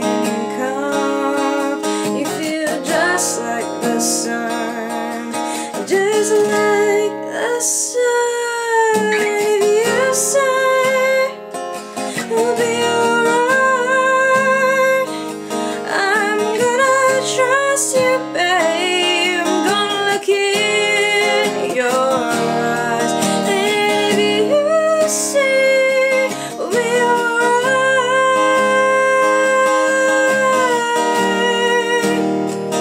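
A woman singing with vibrato over a strummed acoustic guitar.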